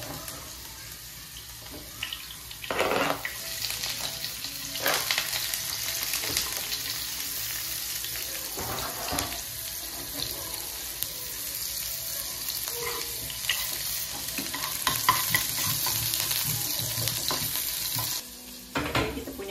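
Sliced ginger and garlic sizzling in hot oil in a small nonstick wok, frying until fragrant. The sizzle picks up about three seconds in, with a few sharp knocks or scrapes of the spatula against the pan.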